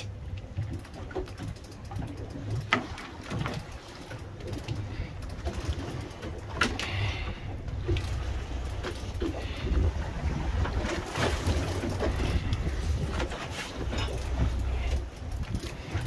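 Steady low rumble of the boat's engine and the sea, with scattered clicks and knocks from a heavy trolling rod and lever-drag reel as the handle is cranked against a big fish.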